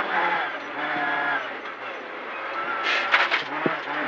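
Renault Clio N3 rally car's engine heard from inside the cabin, running under load on a snowy stage. It eases off and quietens around halfway, then picks up again. A cluster of sharp crackles comes about three seconds in.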